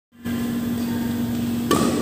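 A badminton racket strikes the shuttlecock once, a sharp crack near the end, over a steady low hum in the hall.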